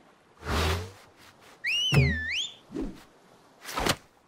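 Cartoon sound effects: a whoosh, then a whistle that rises, dips and rises again over about a second with a low thud in the middle, and another whoosh near the end.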